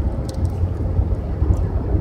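Road noise inside a moving car: a steady low rumble of the engine and tyres heard from the cabin, with a couple of faint clicks.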